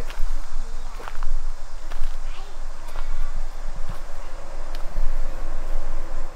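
Irregular footsteps and scuffs on a dirt and leaf-litter trail, about one a second, over a steady low rumble on the camera microphone.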